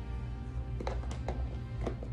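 Soft background music with several light clicks of an oracle card deck being shuffled by hand, starting about a second in.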